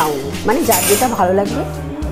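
Stainless-steel chafing dish lid and serving tongs clinking and scraping: a sharp metallic clink at the start and a short scraping rattle just under a second in.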